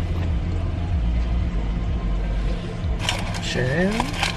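Car engine idling, heard inside the cabin as a steady low rumble. A short rising tone and a burst of hiss come near the end.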